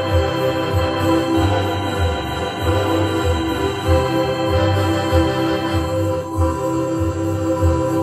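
Two stacked electronic keyboards played live with an organ-like voice: held chords over a bass line that pulses about twice a second.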